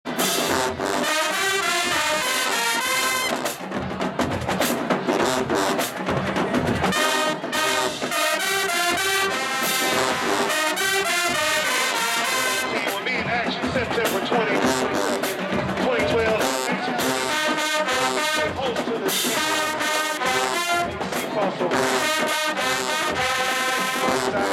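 HBCU marching band playing a stand tune in the bleachers: brass led by sousaphones over drums, with crowd voices mixed in.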